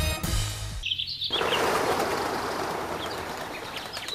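Theme music cuts off abruptly under a second in. Birds then chirp briefly, over a steady outdoor dawn ambience that slowly fades.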